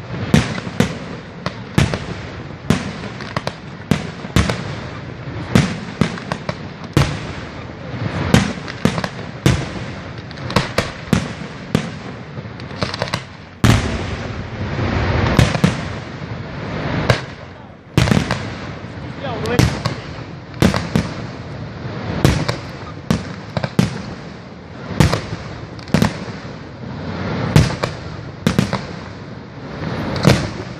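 Aerial fireworks shells bursting one after another, each a sharp bang followed by a rolling echo, about one every second. Around the middle the bangs crowd together into a denser, louder barrage.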